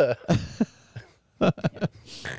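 A man laughing: a breathy laugh near the start, then a quick run of short chuckles about a second and a half in.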